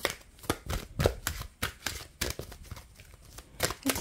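A deck of Energy Oracle Cards being shuffled by hand: an irregular run of short card-on-card slaps and clicks, a few a second.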